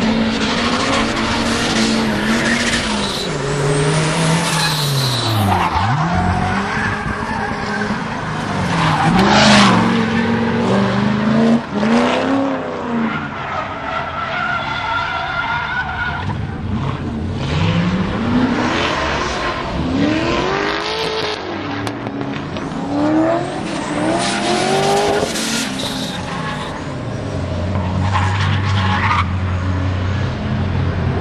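Drift cars, a Nissan 240SX and a Porsche 944, sliding through corners: engines revving up and down in repeated rising and falling sweeps, over long stretches of tyre squeal. The squeal is loudest about a third of the way in and again near the end.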